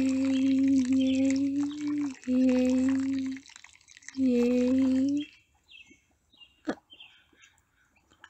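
A woman humming one steady low note in three stretches, broken twice and stopping about five seconds in. After that only faint drips and small clicks of wet mud.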